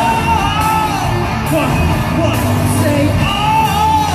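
Live K-pop concert music with singing, played through an arena's PA system.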